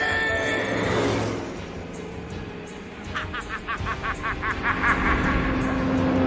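Film soundtrack: action music over a pickup truck's engine and tyres on a dirt road. About three seconds in, the music breaks into a quick run of short repeated notes, about five a second.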